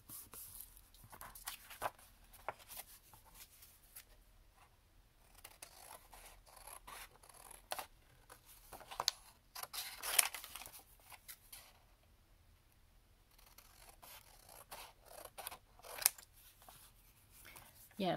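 Hand scissors snipping through cardstock and paper, a string of irregular cuts with paper rustling between them; the loudest snips come about ten seconds in and again near sixteen seconds.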